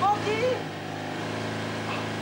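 Women's voices crying out in sliding, wordless wails over a steady low mechanical hum. The loudest cry comes right at the start.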